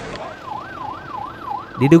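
A siren in a fast up-and-down yelp, about three sweeps a second.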